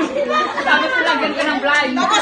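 Several people talking over one another: lively chatter.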